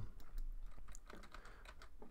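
A few light, irregular clicks from a computer keyboard and mouse as the view is zoomed and a shape is worked on.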